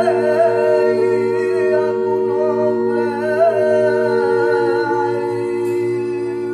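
Live vocal music: a solo voice singing with wide vibrato over a steady sustained chord, the solo line fading out about five seconds in while the held chord goes on.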